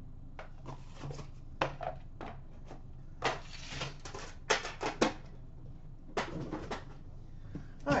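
Trading cards and packaging being handled on a glass counter: scattered clicks, taps and short rustles, with a cluster of sharp clicks about halfway through.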